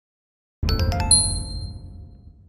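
Channel logo sting: a quick run of bright chime notes over a low bass hit, starting about half a second in, then ringing on and fading away.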